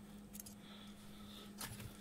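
Faint handling: a couple of soft clicks as a circuit board's pin headers are pulled out of a plastic solderless breadboard, over a steady low hum.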